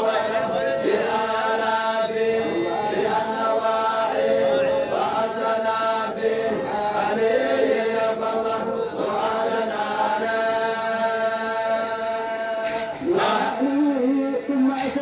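A group of men chanting a Qadiriyya Sufi dhikr together in long, held melodic lines.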